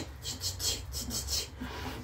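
A quick run of soft kisses and nuzzling rustle as a woman presses her face into three Chihuahua puppies held against her fleece jacket: short, hissy smacks about three or four times a second.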